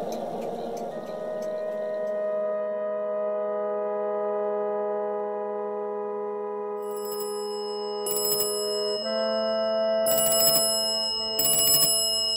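A sustained music chord holds, shifting to a new chord about nine seconds in. From about seven seconds in, a telephone bell rings in short repeated bursts with an incoming call.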